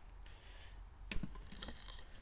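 Handling noise of a hand-held camera being turned around: a few light clicks and knocks, the sharpest just after a second in, over a low hum.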